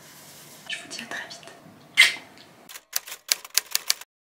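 Typewriter keys clacking: about eight quick, sharp strikes in a little over a second near the end, after a single louder clack about halfway through. It is a sound effect for a closing title being typed out letter by letter.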